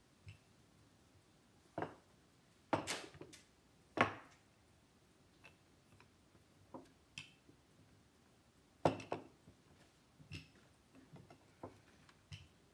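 Wooden rolling pin rolling out bread dough on a table, with irregular knocks and clacks of wood against the work surface and a few louder ones among them.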